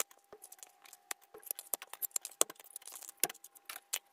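Small metal clips being worked loose and pulled off hardboard picture-frame backings by hand and with pliers: a run of irregular sharp clicks and light scrapes.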